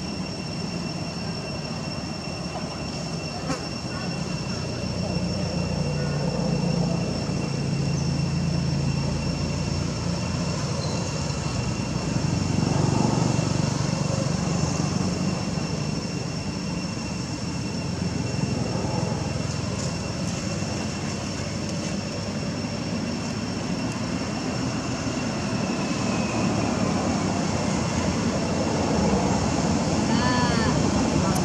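Steady low outdoor rumble with two faint, steady high-pitched tones running above it. It grows a little louder after the first few seconds.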